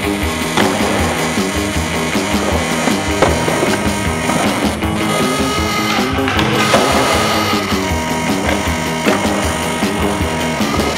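Skateboard wheels rolling on smooth concrete, with several sharp clacks of the board popping and landing, under loud background music.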